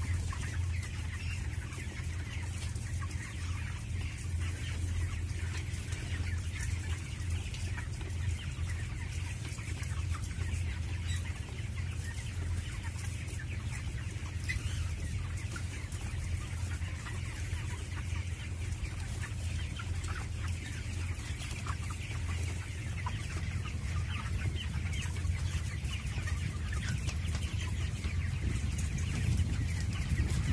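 A large flock of 23-day-old broiler chickens in a closed house, many birds clucking and calling at once in continuous chatter. A steady low hum runs underneath.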